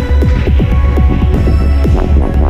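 Experimental electronic music: a loud, steady low bass drone under rapid, repeated falling pitch sweeps, several a second, with held tones above.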